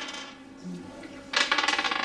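A game die rattling in two short bursts, one fading at the start and another beginning about a second and a half in, as it is shaken and rolled during a board game.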